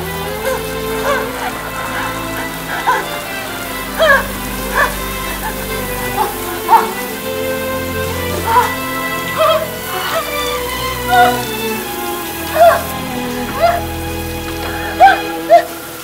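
Dramatic score with long held notes and short sharp accents every second or so, over the steady hiss of a running shower.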